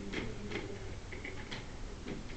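A few light, irregularly spaced clicks over a low, steady room murmur.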